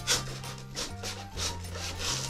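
Utility knife slicing and scraping through soft cured polyurethane spray foam, over background music with a bass line and a steady beat.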